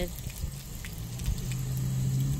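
Garden hose stream splattering faintly on a concrete driveway just after the water comes on, under a low steady hum that builds from about a second in.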